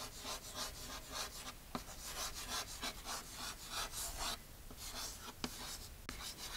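Chalk writing on a blackboard: a quick run of short scratchy strokes, with a couple of sharp taps as the chalk strikes the board.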